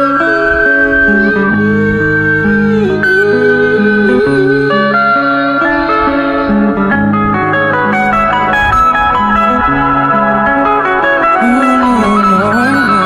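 Electric guitar played through a small amplifier: a melodic lead with bending, gliding notes over sustained chords.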